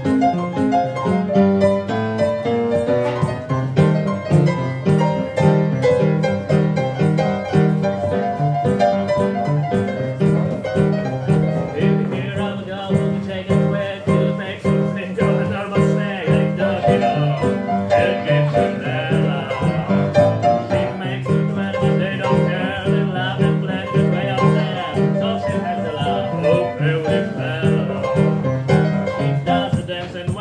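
Upright piano playing up-tempo swing in stride style, the left hand keeping a steady, even bass-and-chord beat under the right-hand melody.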